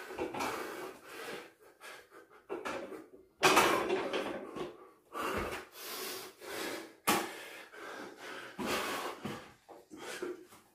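A man breathing hard and loud from exertion while doing pull-ups, with heavy breaths about every second and short pauses between them. A faint click is heard a little after the halfway point.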